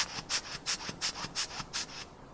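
Rubber ear-syringe bulb squeezed again and again into a port of a small fuel cell, blowing air and excess water out: a quick series of short hissing spurts, about five or six a second, that stop suddenly at the end.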